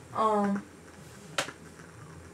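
A single sharp finger snap about a second and a half in, after a brief hummed vocal sound.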